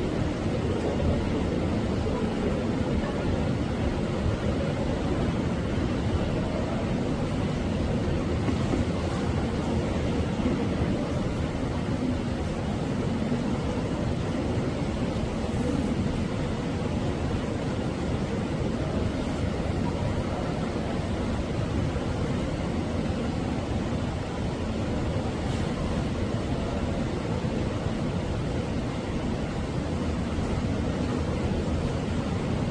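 Steady low background rumble and hiss with no distinct events.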